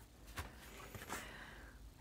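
Faint rustle of a sheet of paper being handled on a cutting mat, with a couple of light taps.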